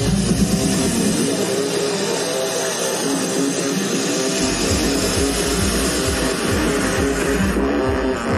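Electronic dance music playing loud over a festival sound system, heard from within the crowd. The kick drum and bass drop out for about three seconds, then come back in about four seconds in.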